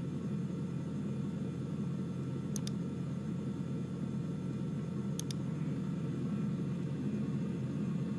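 Simulated belt conveyors in Factory I.O. running with a steady low rumble as they are forced on, with faint clicks twice.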